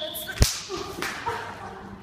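A whistle blast that stops just after the start, cut off by a single sharp crack like a whip, followed by an uneven rustle of movement.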